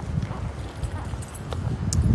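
Low, irregular thumps and rumble from a hand-held phone being carried while walking, with a sharp click near the end.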